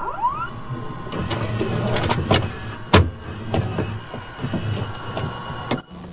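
Electronic glitch sound effects for a podcast bumper: rising sweeps at the start, then a held electronic tone under scattered digital clicks and hits, the loudest hit about three seconds in. It cuts off suddenly near the end.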